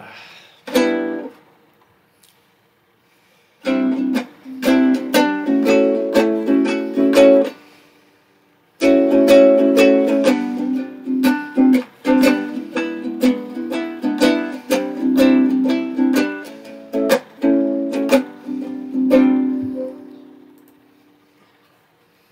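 Guitar strummed in chords: a few strokes at first, then steady strumming from about four seconds in with a short break around the middle, ending on a chord left to ring out and fade.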